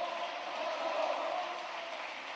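A crowd of parliamentarians applauding, a steady clatter of clapping with a few voices mixed in.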